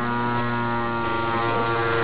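Bedini pulse motor running, its audio-transformer drive coil giving off a steady buzzing hum with many overtones as it pulses the spinning magnet rotor.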